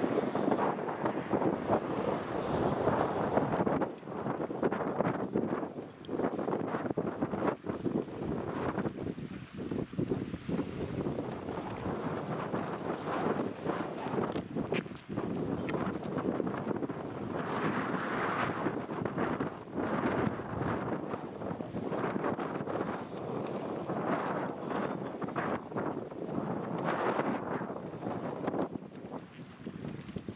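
Wind buffeting the camera microphone, rising and falling in uneven gusts.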